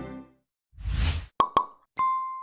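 Logo-reveal sound effects: the ad's keyboard music dies away, then there is a short whoosh about halfway through, two quick pops a fraction of a second apart, and a bright ding right at the end that rings on.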